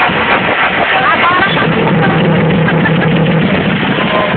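Loud electronic dance music over a sound system, with a steady bass line and the chatter and shouts of a large crowd mixed in.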